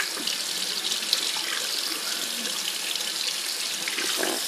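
Kitchen faucet running steadily, the stream splashing over an apple held under it and into a stainless steel sink.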